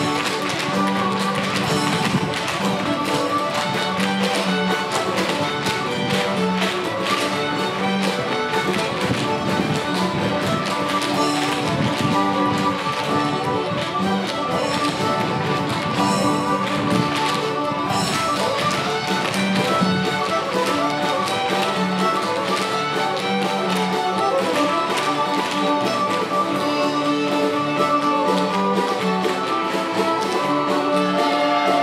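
Fiddle ensemble with guitar playing a lively Celtic tune, with many sharp taps of dancers' feet on the wooden stage running through it.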